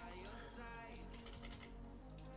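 Typing on a computer keyboard, a run of quick key clicks, with music and singing playing faintly behind.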